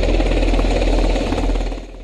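Military helicopter flying low overhead: a loud, rapid rotor chop over a deep engine drone, cutting in suddenly and dropping away near the end.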